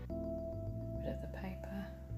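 Soft instrumental background music, with a new held note starting at the outset over slow bass notes. Faint rustling of sheet paper being handled comes in about a second in.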